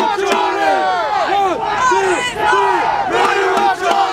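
A large crowd of protesters chanting and calling out together. Many overlapping voices give short cries that rise and fall, one after another, with no clear words.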